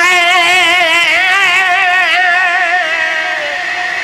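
A man's singing voice holding one long, high note with wide, even vibrato, easing slightly in loudness near the end.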